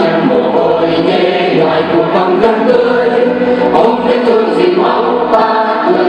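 Mixed choir of women and men singing a Vietnamese song together.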